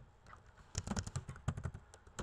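Computer keyboard typing: a quick run of keystrokes starting just under a second in.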